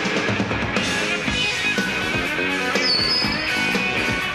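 A live hard rock band playing an instrumental stretch: distorted electric guitars over a driving drum kit, with no vocals. A short high tone sounds about three seconds in.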